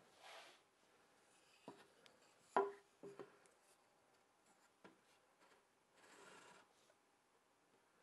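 Mostly near silence, broken by a few faint knocks and clicks of a wooden centre-finder jig being handled and adjusted, the loudest about two and a half seconds in, and a brief soft rub about six seconds in.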